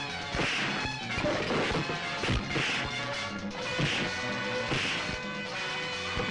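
Film fight sound effects: a series of sharp punch whacks and crashes, about four or five in six seconds, over steady background music.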